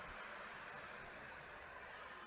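Faint steady hiss of background noise from an open microphone on a video call, with no other sound standing out.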